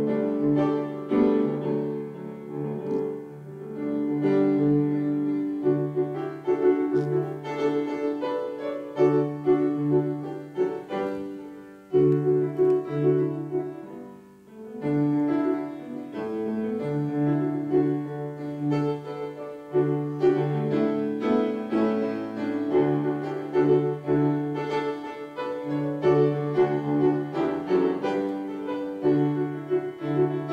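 Electric keyboard playing the slow instrumental introduction to a traditional folk song, with sustained chords under a melody and brief pauses between phrases.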